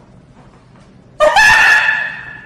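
A rooster crowing: one loud call that starts suddenly about a second in, sweeps up and holds a high note.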